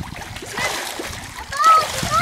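Water splashing as a swimmer kicks and strokes through a backyard pool. A short voice call comes near the end.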